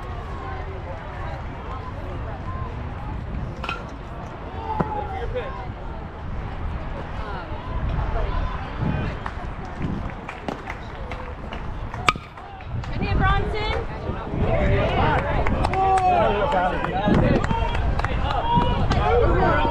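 Voices of players and spectators talking around a baseball field, then about twelve seconds in a single sharp crack of a metal bat hitting the ball, after which the voices grow louder with shouting.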